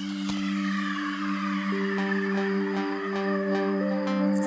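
Spooky background music: two low notes held steadily under a falling swoosh at the start, with a pattern of short, higher repeating notes joining in about two seconds in.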